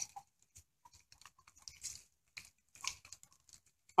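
Faint, scattered crunches and rustles of footsteps on wet leaves and pavement, irregular, with a few slightly louder steps a couple of seconds in and near three seconds.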